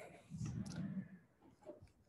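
Quiet pause in a talk: a faint, low, drawn-out murmur from the speaker's voice, then a few small clicks near the end.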